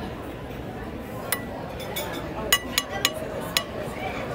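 Metal spoon clinking against a stainless steel dish and plate while horseradish is scooped and served: about five sharp, ringing clinks, most of them in the second half, over a murmur of voices.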